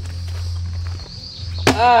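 A small plastic bottle flipped onto a wooden tabletop, landing with one sharp knock near the end, over a steady low hum.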